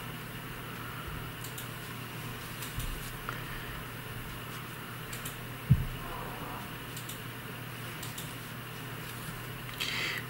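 A dull, low thump from a neighbour's flat a little past halfway, with a couple of fainter knocks before it, over a steady low room hum.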